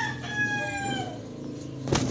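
A rooster crowing, its long drawn-out call sagging in pitch and trailing off about a second in. A single sharp knock comes just before the end.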